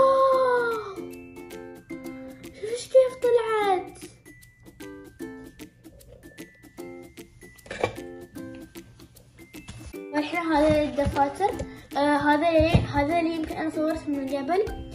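Background music with a light plucked, ukulele-like tune. A voice sings or glides over it near the start, again about three seconds in, and more densely in the last few seconds.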